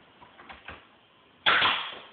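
Pneumatic nail gun firing once about a second and a half in: a sudden sharp shot that fades quickly, driving a nail into wooden ceiling panelling. A few faint clicks come before it.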